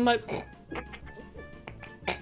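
Stifled laughter in short, quiet bursts, held in behind a hand over the mouth, breaking off a spoken joke.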